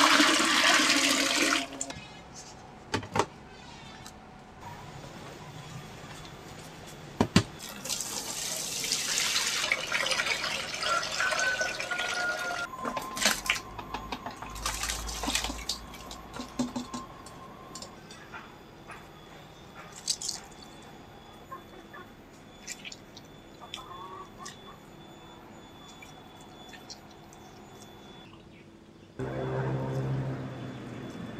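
Water pouring in a thick stream into a plastic basin of cut cassava, changing the soaking water, which is done every day of the three-day soak for making oyek. The pouring is loudest in the first second or so and comes again in shorter rushes later, with a few sharp knocks in between.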